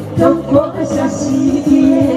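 Women singing into microphones over a backing track, amplified through a stage PA.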